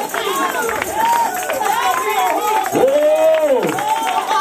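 Several voices calling out and singing over one another in worship, with one long cry that rises and falls for about a second near the end.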